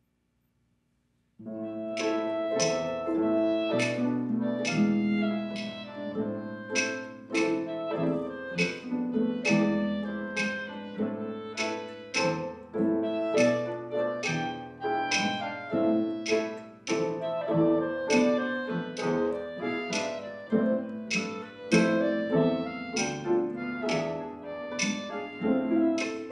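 A school orchestra of bowed strings, harp and piano starts playing a piece about a second and a half in, after near silence. Sustained string chords run under a steady pulse of short accented notes.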